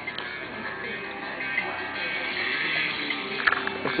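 Music playing through the Mustang's Shaker 500 stereo system, at a steady level.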